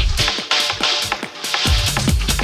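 Techno played in a DJ mix: the kick drum and bass drop out about a third of a second in, leaving only the higher layers, and come back just before the end.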